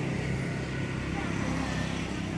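Steady outdoor background hum of street traffic with a low engine drone, with no single event standing out.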